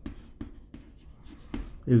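Chalk scratching and tapping on a chalkboard as words are written, heard as a string of short scrapes and taps.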